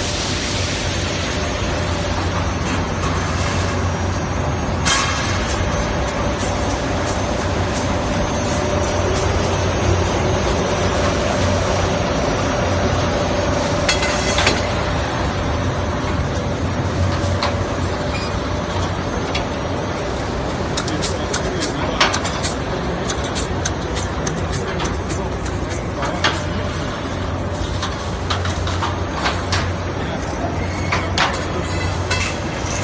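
Steady, loud running noise of an aluminium brazing furnace production line: a broad rushing hum with a faint steady tone in it. From about two-thirds of the way in, many light metallic clicks and clinks sit on top of it.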